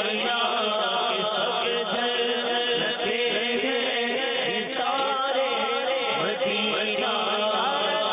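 A man singing a naat, an Urdu devotional poem, into a microphone in a long, wavering, melismatic chant.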